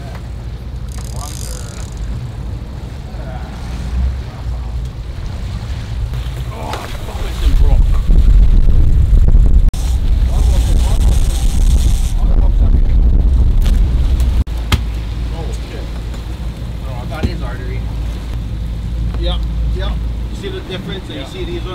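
Sportfishing boat's engine running with wind buffeting the microphone, a low rumble that grows much louder for several seconds in the middle, with brief bursts of hiss.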